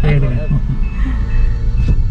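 Low, steady rumble of a rented Toyota Vios's engine and road noise inside the cabin, with a few faint short beeps from the car's warning chime.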